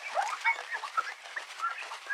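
A cloth wiping the glass top of a digital bathroom scale, rubbing with a hiss and giving off quick, chirpy squeaks of fabric dragging on glass.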